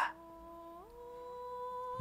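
Quiet background music of a few sustained, steady tones held as a chord, with the notes stepping up in pitch to a new chord about a second in.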